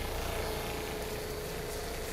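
Handheld battery-powered misting fan running, its small motor spinning the propeller blades fast: a steady whirring hum with one even whine held throughout.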